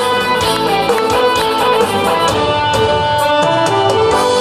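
Instrumental break in a Korean pop song's backing track played over a PA speaker: held melody notes over chords and a steady beat, with no singing.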